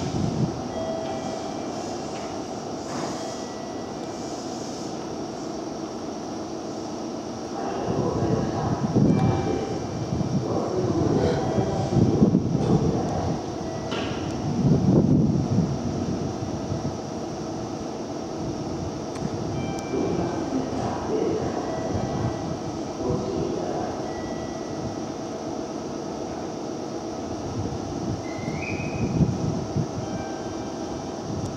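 Electric train at a station platform: a steady running hum, swelling into louder rumbling between about eight and sixteen seconds in. A short rising tone sounds near the end.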